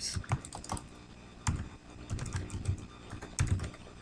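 Typing on a computer keyboard: a quick run of key clicks, with two louder keystrokes about one and a half seconds in and near the end.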